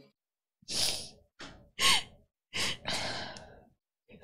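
A woman crying: about four shaky, breathy sobs and sighs, one of them with a short falling whimper near the middle.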